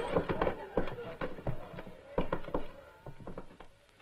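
A run of irregular knocks and thuds, fading toward the end, with brief bits of voice among them.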